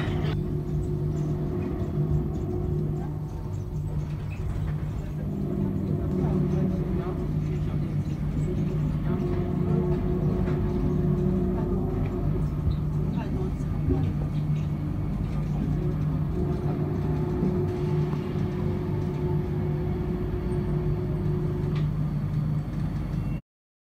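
Mitsubishi Crystal Mover rubber-tyred people mover heard from inside the car while running: a steady rumble with an electric motor hum whose few steady tones come and go.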